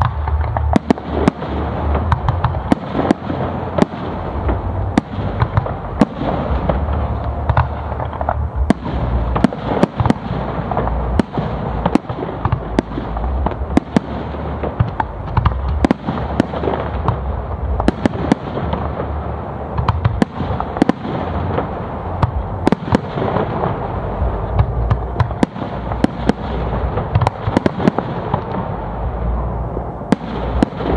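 Fireworks display: aerial shells bursting in quick succession, with many sharp bangs over a continuous low rumble.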